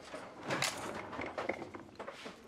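Light knocks and scrapes of a hospital meal tray and its covered dishes being handled and set down, with a couple of sharper knocks about half a second and a second and a half in.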